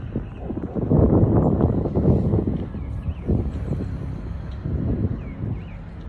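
Wind buffeting the phone's microphone: an irregular low rumble in gusts, loudest from about one to two and a half seconds in.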